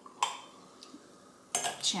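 A single sharp glass clink with a short ring, from a champagne bottle meeting a champagne flute while champagne is poured. A woman starts speaking near the end.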